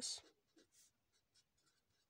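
Pen writing on lined notebook paper: faint, short scratching strokes as a handwritten word is formed.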